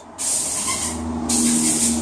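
Two bursts of hissing, each about half a second long, over a steady low hum with a held tone that comes in about a second in.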